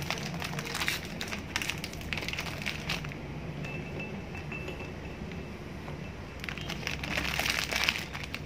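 Plastic Oreo wrapper crinkling as cookies are pulled out and dropped into a small glass blender jar, with light clinks against the glass. The crinkling comes in two spells, one at the start and one again near the end, with a quieter stretch between.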